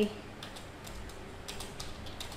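Computer keyboard keys clicking as text is typed: a few irregular, fairly faint keystrokes.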